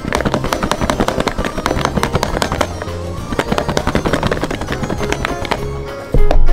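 Lidded plastic food container being shaken hard, the soft plastic lures and coating powder inside knocking against its walls in a rapid, continuous clatter. Background music plays underneath.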